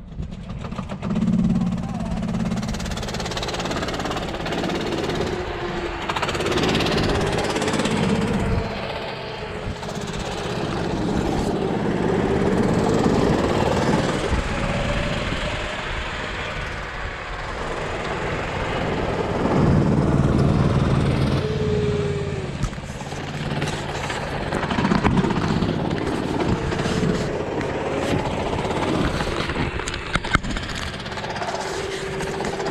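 Sodikart RT8 rental go-kart engines running at idle up close, with a fast, rough beat. Their pitch rises and falls briefly every few seconds as the throttles are blipped.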